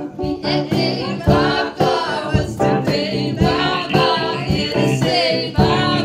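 A small live band playing: keyboard under a wavering melodic lead line, with short percussive strokes marking the beat.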